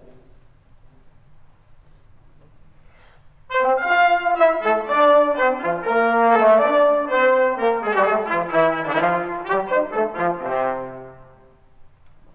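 Trumpet and trombone playing a quick run of notes together, both on exactly the same notes: the two parts of a canon started at the same time. The playing begins about three and a half seconds in after a quiet pause and stops just before the end.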